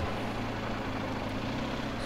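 Motorcycle engine running steadily as the bike rolls along slowly at about 25 km/h.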